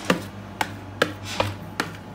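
A metal spoon scraping and knocking against a plastic mixing bowl as oil-and-spice-coated potato wedges are pushed out onto a parchment-lined baking tray: about five sharp knocks, a little over two a second.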